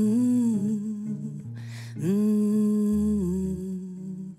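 A woman humming long held notes, one fading about half a second in and another starting about two seconds in, over low sustained notes on an electric bass guitar.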